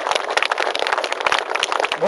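A crowd clapping: a dense, irregular patter of many hand claps.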